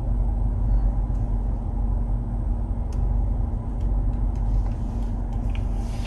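Steady low rumble heard inside the cabin of a 2020 Nissan Altima S running in reverse, with a faint steady hum over it.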